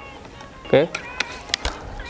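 Sharp Fusion 2565 multi-pump pneumatic air rifle being charged: the underlever pump arm is swung closed, giving a few sharp metallic clicks and a dull thump about one and a half seconds in.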